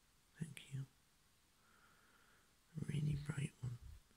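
A person speaking quietly, close to a whisper, in two short phrases: a brief one about half a second in and a longer one near the end.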